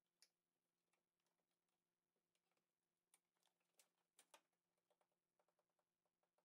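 Near silence, with faint scattered clicks and ticks, a few clustered near the middle and again near the end.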